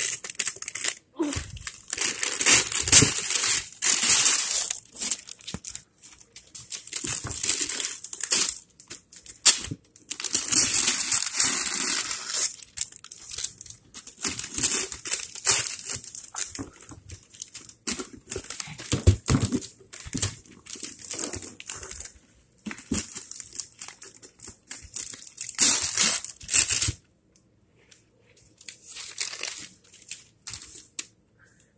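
Paper crinkling and rustling in irregular bursts as a child unwraps a present: tissue paper and gift wrap being handled and pulled. The rustling stops near the end.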